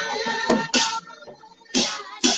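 Large brass hand cymbals crashed in a steady dance rhythm, each crash ringing on. Crashes come near the start, about three-quarters of a second in and near the end.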